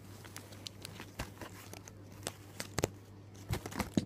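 Clear plastic packaging of a squishy toy crinkling and rustling as it is handled, with a handful of separate sharper crackles, over a steady low hum.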